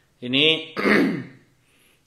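A man says a short word and then clears his throat once, loudly, about a second in.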